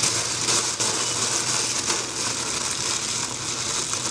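Thin plastic carrier bag crinkling and rustling continuously as it is handled and crumpled in the hands.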